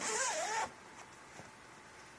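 Zipper on a sewn fabric duffel bag being pulled for about half a second, a rasp with a wavering pitch, followed by a few faint handling clicks.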